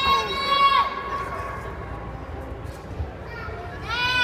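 A young child's high-pitched squeal, held for about a second at the start, over a steady background of crowd chatter.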